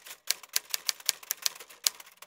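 Typewriter key-click sound effect: a quick, even run of sharp clicks, about six a second, one for each letter of a title typing onto the screen.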